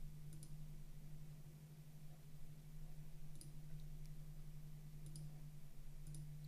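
A few faint computer mouse clicks, spaced irregularly, over a steady low electrical hum.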